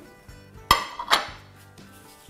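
Tableware clinking: two sharp clinks of a serving spoon or dish on ceramic crockery, about half a second apart, over soft background music.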